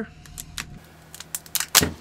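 A new plastic spice-shaker cap being twisted open for the first time, its seal giving way in a run of sharp clicks and crackles, loudest near the end.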